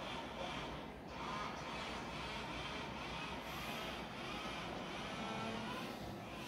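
Faint steady background noise with no clear source, and no speech.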